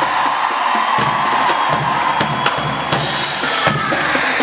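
College marching band playing, with drum strikes prominent over the brass and a large crowd's noise underneath.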